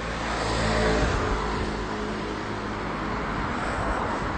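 A car driving past, its engine and tyre noise swelling to a peak about a second in and then slowly fading.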